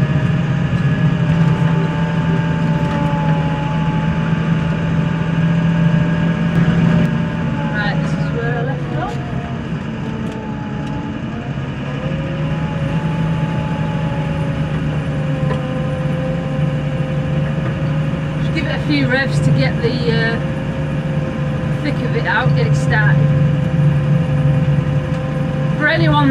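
Tractor engine running steadily, heard from inside the cab. Its sound drops for a few seconds about a third of the way in, then its note rises and it runs on steadily again.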